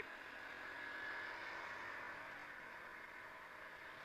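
Steady, fairly quiet wind and road noise from a moving RS125FI motorcycle, with the engine faintly humming underneath.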